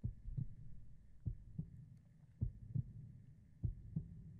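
Slow heartbeat sound effect: four pairs of soft, low thumps, one pair about every 1.2 seconds.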